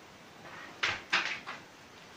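Marker writing on a whiteboard: three short strokes close together about a second in.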